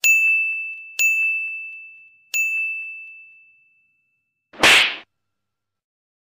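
Three bell-like dings from a video-editing sound effect, struck over about two seconds. Each is one high tone that rings out and fades. A short whoosh-like burst of noise follows near the end.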